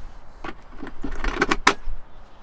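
Plastic battery box lid being lowered and pressed shut onto the box, a run of light plastic clacks and knocks, the two sharpest close together a little after a second and a half in.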